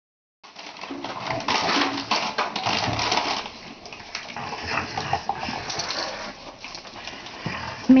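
An adult dog and young puppies scuffling and playing among toys on a hard floor, with busy, rustling movement noise that is loudest in the first few seconds and settles down after.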